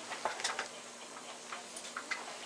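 A few light clicks: a quick cluster in the first half second and a couple more near the end, over a faint background hiss.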